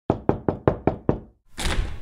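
Six quick, sharp knocks, about five a second, followed about a second and a half in by a short burst of rushing noise.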